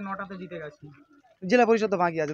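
A man speaking, with a short pause in the middle.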